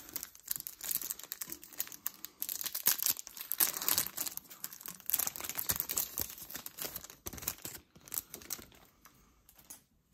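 A foil Yu-Gi-Oh booster-pack wrapper crinkling and being torn open by hand: a dense run of crackling that dies down about two seconds before the end.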